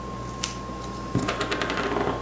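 Scissors cutting out a small paper shape: one snip about half a second in, then a quick run of small snips and clicks from just past the middle.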